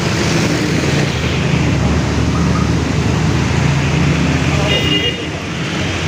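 Motorcycle and scooter engines running as they pass close by in street traffic, with a short horn toot near the end.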